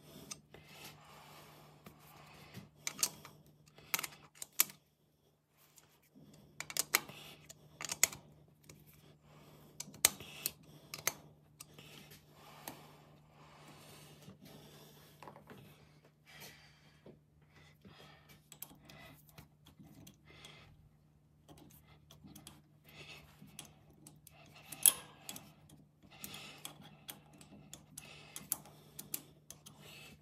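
Irregular sharp metallic clicks and taps, with some light rubbing, from a hex key worked in the adjusting cap screws of a lathe collet chuck while the chuck is turned by hand on the spindle. The chuck is being trued against a dial indicator. A faint steady hum sits underneath and drops out briefly a few seconds in.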